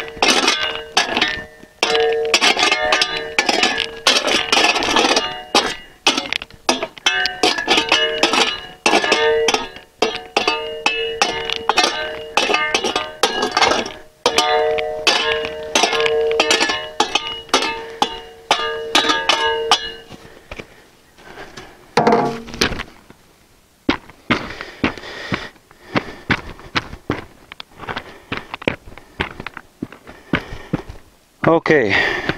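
Steel shovel blade scraping and clinking against crushed limestone rocks as they are spread across the bottom of a hole, with rapid knocks and the blade ringing on each hit. The clinking stops about twenty seconds in, leaving scattered knocks of the rocks shifting underfoot.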